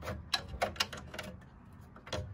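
A quick run of light, sharp clicks in the first second, then fainter ones: small hard objects being handled on a bench.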